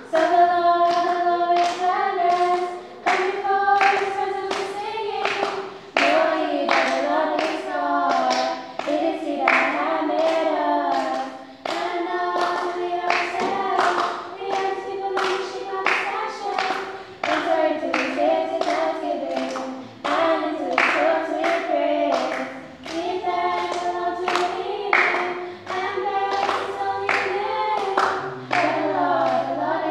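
A trio of girls singing an unaccompanied gospel song in harmony, clapping their hands on the beat throughout.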